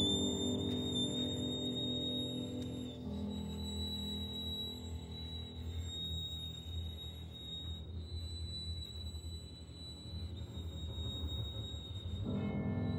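Orchestra and solo violin in a slow, quiet passage of a violin concerto: a thin, very high held note sounds over low sustained notes. The fuller chords in the middle range thin out about three seconds in, leaving a sparse, eerie texture.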